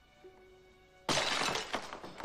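A small drinking glass breaking as it is crushed in a man's fist: a sudden shatter about a second in, followed by more sharp cracks of breaking glass.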